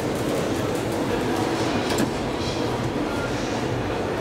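Passenger elevator car running in its shaft: a steady mechanical rumble, with a single sharp click about two seconds in.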